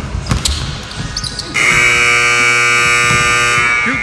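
Basketball dribbling on a hardwood gym floor, then about a second and a half in a gym clock buzzer sounds: one loud, steady electronic tone held for about two seconds.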